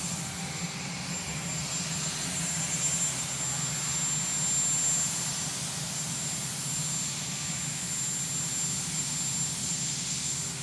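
Sikorsky VH-3D Sea King helicopter (Marine One) with its turbine engines running on the ground: a steady jet-like turbine noise with a thin, high whine over a low hum.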